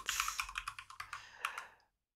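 Typing on a computer keyboard: a quick run of key clicks that thins out and stops shortly before the end.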